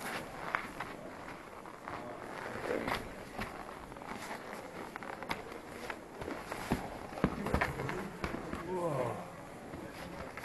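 Snow boots crunching and scuffing over packed snow and broken ice in irregular footsteps, with a run of sharper cracks and knocks about seven to eight seconds in.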